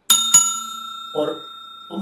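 Bell-ding sound effect for a subscribe button's notification bell: two bright strikes about a quarter second apart, then a clear ringing that slowly fades.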